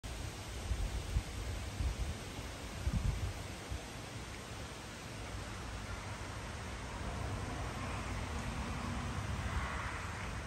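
Wind outdoors: gusts buffet the microphone in short low thumps for the first few seconds. A steady hiss of wind through the trees then swells toward the end.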